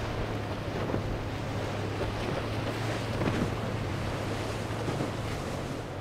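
Cruisers Yachts express cruiser running through chop: a steady low engine hum under the rush of spray and waves, with wind buffeting the microphone.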